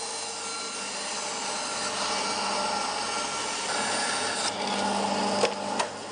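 Bandsaw resawing a wooden block along its fence: the blade cutting steadily over the machine's hum, louder in the middle of the cut, with two sharp clicks near the end.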